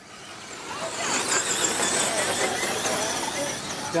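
Electric RC short-course truck's motor and gears whining at a high, wavering pitch, growing louder over the first second and then running steadily at speed.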